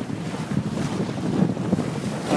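Wind blowing across the microphone, rising and falling unevenly, over the wash of water past the bow of a sailboat under sail.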